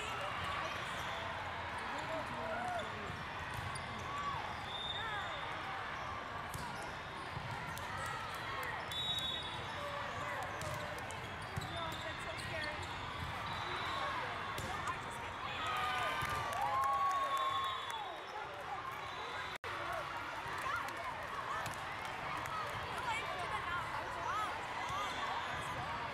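Hall chatter of many voices and players' calls, echoing in a large hall, with the repeated thuds of a volleyball being served, passed and hit during a rally.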